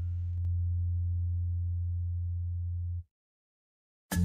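A steady, low-pitched hum, a single low tone with no rhythm, that cuts off abruptly about three seconds in.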